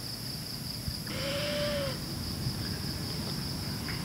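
Spotted wood owl giving one soft, hoarse screech about a second in, under a second long, rising slightly and falling in pitch. A steady high drone of night insects sounds behind it.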